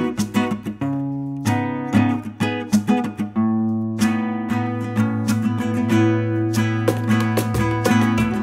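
Instrumental song intro on acoustic guitar, chords strummed and picked note by note, with no singing.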